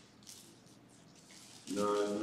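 Quiet room with faint rustling of Bible pages at the lectern, then a man's voice says "nine" near the end.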